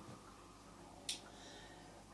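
Near silence: quiet room tone, with one faint short click about a second in.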